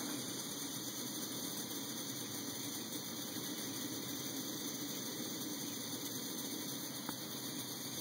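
MSR WhisperLite liquid-fuel stove burning 91% isopropyl alcohol through a kerosene (K) jet drilled out to about 0.8 mm, giving a steady, even burner rush. It is not as loud as the stove running on white gas.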